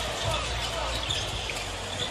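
A basketball being dribbled on a hardwood arena court, over a steady low arena hum.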